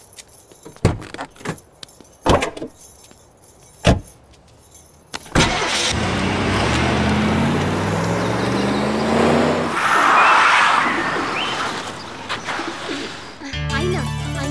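A few separate sharp knocks, then a car engine cuts in loud and the car drives off, its engine note rising in pitch over several seconds. Music comes in near the end.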